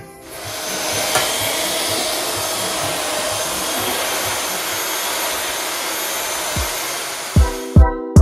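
Electric paddle mixer running steadily, its paddle churning thick grey tile adhesive in a plastic builder's bucket. It starts about half a second in, rises quickly to full speed, and stops shortly before the end, where music with a heavy bass beat comes in.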